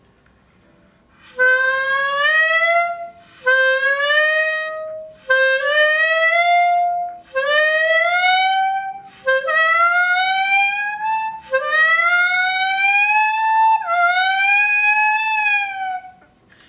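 Clarinet playing seven upward glissandos one after another, each sliding smoothly up from the same starting note: practice slides over growing intervals, the first about a third (D up to F), the later ones rising higher and lasting longer. The last slide turns slightly back down at its end.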